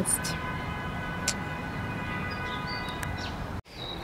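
City street ambience: a steady rush of distant traffic with a faint, steady high whine, cut off abruptly shortly before the end.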